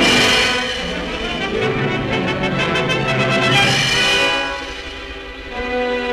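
Orchestral film score led by brass, entering loudly, swelling, then easing near the end into held lower notes.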